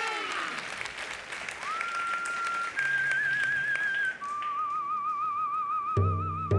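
Male voices holding a sung chord that slides down and fades in the first half-second, with brief applause. Then a man whistles a slow melody: one note slides up and holds, a higher note wavers with vibrato, and a long lower note ends with wide vibrato.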